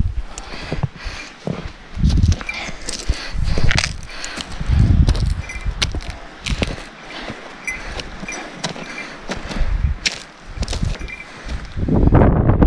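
Footsteps in snow on a trail, irregular and crunching, with rustle from a handheld camera and several low thumps on the microphone.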